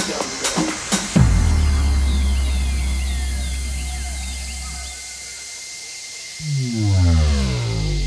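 Tech house remix in a breakdown: the drum beat stops about a second in, leaving a long deep bass note that fades away under a falling synth sweep. A stepping synth bass line comes in near the end.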